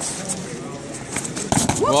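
A judoka thrown onto the tatami, landing with a sudden thud about one and a half seconds in, met at once by a rising "ouh!" from spectators; the throw scores a yuko.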